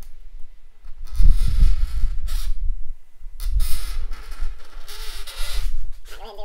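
Hand work on an acrylic (plexiglass) sheet: three noisy scraping strokes of about a second each, over a low rumble.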